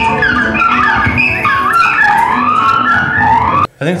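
Experimental noise band playing live: layered electronics and effected guitar make many swooping, squealing pitch glides over a steady low drone, with drums. The music cuts off abruptly near the end.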